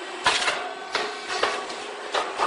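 Multi-mould rice cake popping machine running its cycle: three sharp mechanical bursts, each trailing off quickly, over a steady machine hum.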